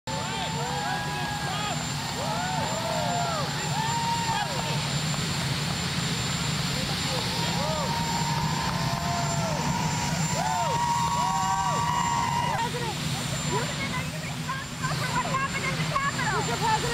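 Helicopter turbine engines running steadily, a high whine over a low hum, with people shouting and calling out over it.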